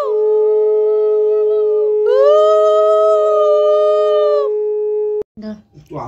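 Conch shells (shankha) blown in long held notes, two at once at different pitches; each blast swoops up at its start and sags at its end. The sound cuts off suddenly about five seconds in, and talking follows.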